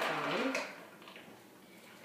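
Brief rubbing scrape of a plastic straw being pushed down through a plastic tumbler lid, over the end of a spoken word; then quiet room tone.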